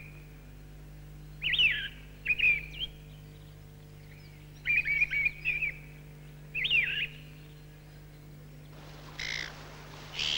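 A songbird singing short, quickly gliding phrases about four times, a second or two apart, with a low steady hum underneath.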